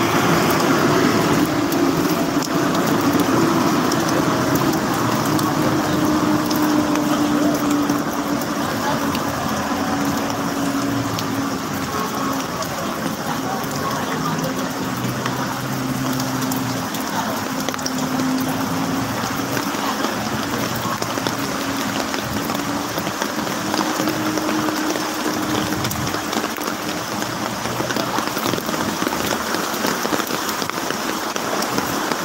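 Floodwater splashing and rushing against the side of a vehicle as it drives through a flooded street, with the vehicle's engine humming steadily underneath.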